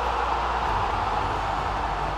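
A steady rushing, hiss-like whoosh sound effect accompanying a broadcast graphics transition, with a low steady hum beneath it.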